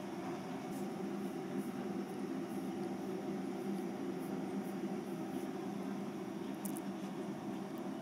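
Steady low room hum, even throughout, with a few faint ticks.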